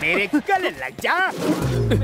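A man crying out in short, loud exclamations whose pitch swings sharply up and down, the loudest about a second in. Near the end a low music tone comes in and slides slowly downward.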